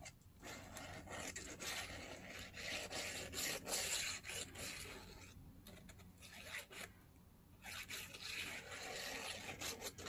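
Quiet rustling and rubbing of paper journal pages being handled and glued along a fold, with a short pause about two-thirds of the way through.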